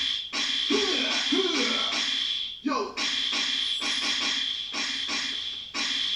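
Portable electronic keyboard playing a programmed beat: an evenly repeating rhythm with sliding, voice-like sounds over it, with a brief break about two and a half seconds in.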